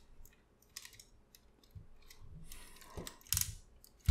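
Plastic parts of a Transformers Masterpiece MP-44 Convoy figure clicking and clacking as they are rotated and fitted together by hand: a few light clicks, then a louder clack near the end.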